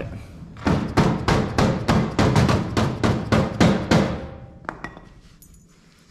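A hammer tapping on metal in a quick run of about five blows a second for some three seconds, fading near the end. The taps are seating the car's collapsible steering shaft in place.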